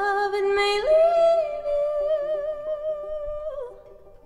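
A woman singing a long held note, stepping up to a higher note about a second in and holding it with vibrato, then letting it fall away near the end, over soft banjo accompaniment.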